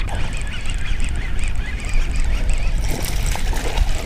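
Steady wind noise buffeting the microphone over choppy open water, with the water lapping.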